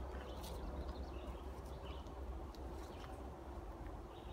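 Footsteps on a dirt woodland trail, a scatter of light crunches and taps, over a low steady rumble, with a few brief bird chirps in the background.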